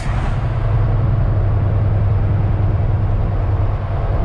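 Semi truck's diesel engine running steadily at highway speed, with road and tyre noise, heard from inside the cab as a constant low hum.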